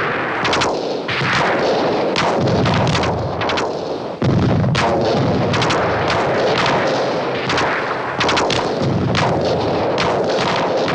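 Battle sound of street fighting: a dense barrage of gunfire and shellfire, sharp shots in rapid, irregular succession over a continuous rumble, growing suddenly louder about four seconds in.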